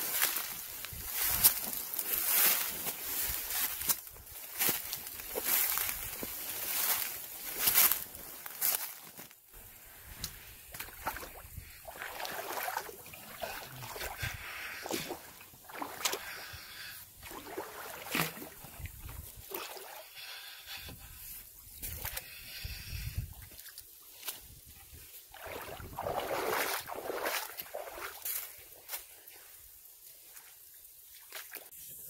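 Footsteps wading through a shallow creek, with irregular sloshes and splashes of water and the rustle and crackle of brush and branches being pushed through.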